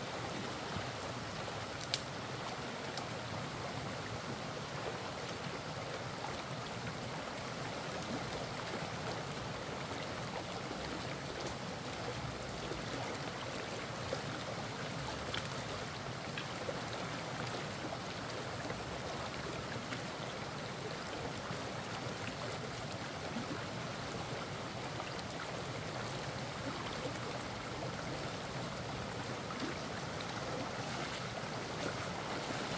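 Released floodwater rushing steadily down a shallow stream channel below a just-unblocked culvert as the flooded pond drains, with a few faint knocks.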